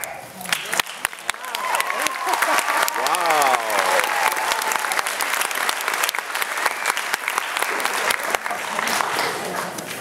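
Audience applauding, building up in the first couple of seconds and easing off near the end, with voices calling out over it in the first few seconds.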